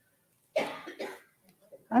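A woman coughing into a close microphone: a sharp cough about half a second in and a smaller one just after, then she starts to speak near the end.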